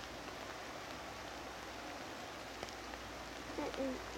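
Steady hiss of light rain falling on the surrounding foliage, with a few faint ticks of drops.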